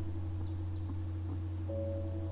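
Steady low hum, with soft background music of held, mallet-like tones coming in near the end.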